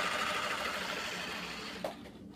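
A child making a long hissing mouth noise that imitates rapid gunfire. It starts sharply and fades out near the end.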